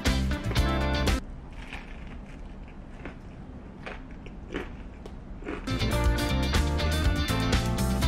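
Background music with a guitar cuts out about a second in. For several seconds there is close, crunchy chewing of a crispy fried chicken burger, heard as irregular crackling crunches. The music comes back near the end.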